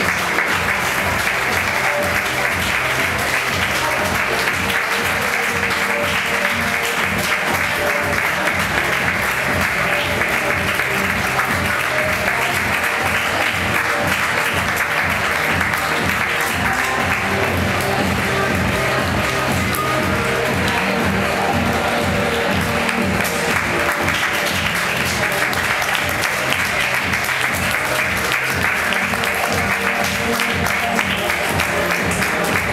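Recorded music playing under steady audience applause that carries on throughout.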